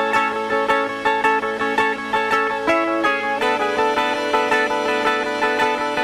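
Background music: a plucked guitar picking a steady pattern of notes, with no singing.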